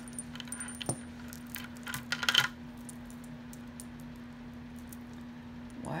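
Costume jewelry beads and chains clinking and jingling as a beaded necklace is handled and pulled free of a pile of tangled jewelry, with a short burst of clinks about two seconds in. A faint steady hum runs underneath.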